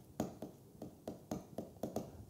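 Pen strokes on a writing surface: a quick series of short, light taps and scratches while words are handwritten.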